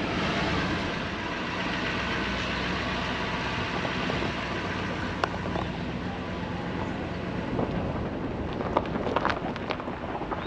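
A vehicle's engine running under a steady rushing noise, with a few sharp knocks and rattles about five seconds in and again near the end.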